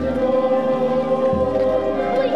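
Choir singing long, held notes in a slow chord, with a low bass note that changes about one and a half seconds in.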